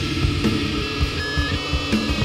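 Death metal: heavily distorted electric guitars riffing over fast, dense drumming, from a 1993 demo recording.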